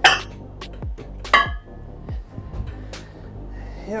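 Metal weight plates clanking as one is handled and loaded onto a bench's leg-extension plate post: two sharp ringing clanks about a second and a quarter apart, the first right at the start, then a few lighter clinks. Background music plays underneath.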